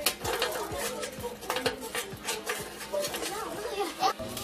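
Irregular light metallic clinks and clicks of a galvanized tin bucket being handled against a chicken-wire frame as a zip tie is pulled tight through it, over background music.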